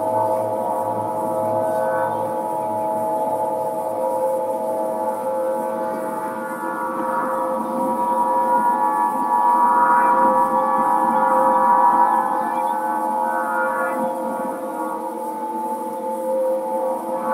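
Aeolian wind harp, tuned to A=432 Hz, its strings set sounding by the wind: several steady overtones held together as one drone, swelling louder about halfway through and easing off again.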